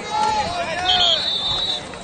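Spectators and players shouting during a football play, with a referee's whistle blowing a steady high note about a second in, lasting nearly a second, to signal the play dead.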